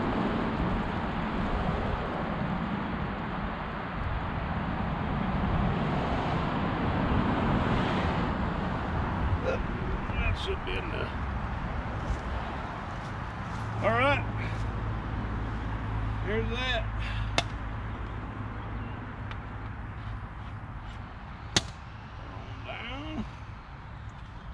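Gasoline pouring from a plastic jerry can into a plastic soda bottle, a steady splashing rush that fades after about twelve seconds. A single sharp click comes near the end.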